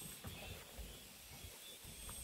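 Quiet outdoor ambience: a faint, steady high hum with soft, irregular low thumps from walking with a handheld phone.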